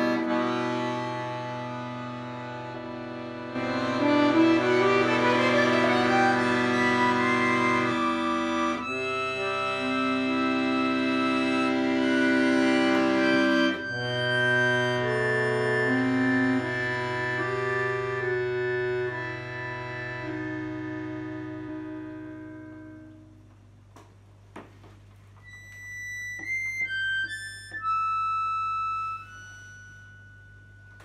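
Chromatic button accordion playing sustained chords over a held bass, with a fast run climbing steadily upward about four to six seconds in. The chords fade away past the twenty-second mark, and a few soft, sparse high single notes follow near the end.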